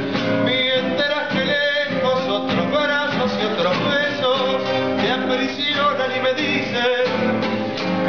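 A man singing a slow song with a wavering vibrato, accompanied by two nylon-string classical guitars strummed and plucked.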